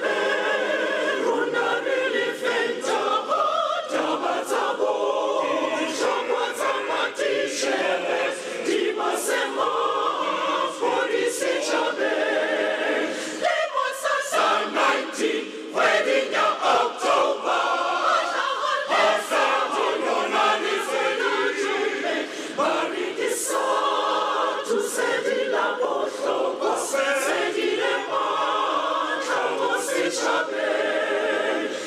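A large mixed choir of men's and women's voices singing unaccompanied, with a brief break partway through.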